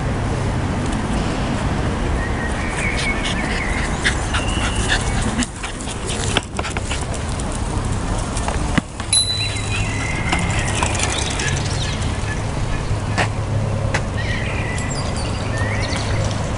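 Small terrier mutt giving a few short barks and yips as it plays with a ball, over a steady low outdoor rumble, with a couple of sharp knocks midway.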